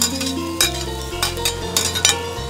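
Metal wok spatula scraping and clinking against a plate and the wok as shredded vegetables are pushed into hot oil, with several sharp clinks over a faint sizzle. Background music with steady low notes runs underneath.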